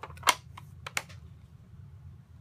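Sharp plastic clicks and taps from a Stampin' Up! ink pad case being picked up and handled, a few in the first second, the loudest about a third of a second in.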